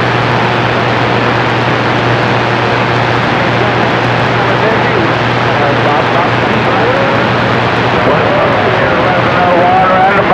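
CB radio receiver hissing with a steady rush of static and a low hum as a distant skip signal comes in. A faint voice wavers under the noise in the second half.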